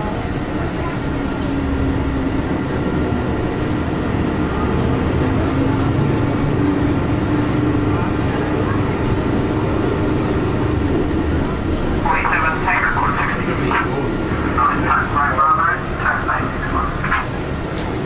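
Bus engine and road noise heard from inside the cabin as the bus drives slowly, a steady low rumble with a faintly wavering drone. Voices come in over it in the last few seconds.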